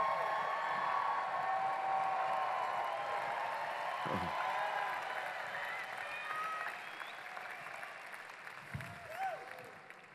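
Large audience applauding and cheering, with scattered shouts and voices in the crowd, gradually dying down toward the end.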